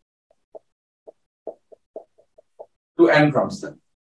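A marker writing on a board, about ten short faint squeaks in quick irregular succession, followed by a brief bit of a man's voice near the end.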